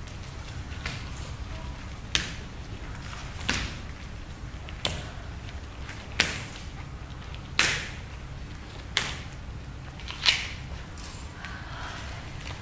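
A stick struck sharply on a wooden stage floor in a slow, steady beat: seven strikes, about one every second and a half.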